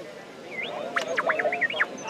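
R2-D2 astromech droid replica beeping and whistling: a quick string of chirps that swoop up and down, starting about half a second in, over the chatter of a crowd.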